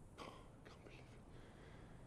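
Near silence, with a short, faint whisper or breath about a quarter of a second in and a few fainter breathy traces just after.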